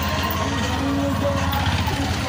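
A three-wheeled CNG auto-rickshaw's small engine idling close by, a steady low drone.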